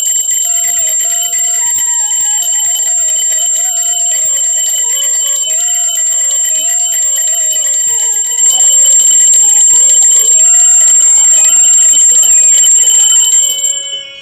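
Small puja hand bell (ghanti) rung continuously in rapid strokes, a bright steady ringing that grows louder about eight seconds in and stops shortly before the end. Devotional music plays underneath.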